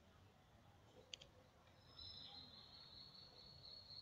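Near silence, broken about a second in by a faint quick double click of a finger tapping a phone touchscreen, then a faint steady high-pitched whine from about halfway.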